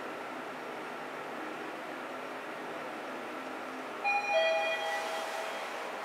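Mitsubishi rope-traction passenger elevator car travelling upward with a steady hum of ride noise. About four seconds in, its arrival chime rings two descending tones, signalling that the car is reaching its floor.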